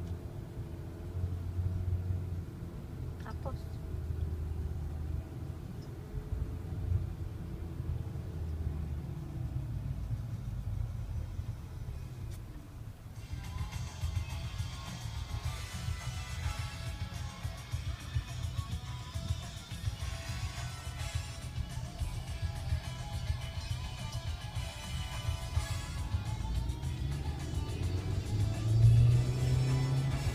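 Low rumble inside a slowly moving car. From about halfway through, music with voices plays over it.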